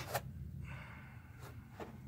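Quiet room tone: a steady low hum with a short click just after the start and a couple of fainter clicks later on.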